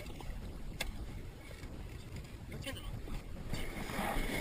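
Low rumbling wind on the microphone and water moving around a small boat, with a single sharp knock about a second in and a rise in hiss near the end.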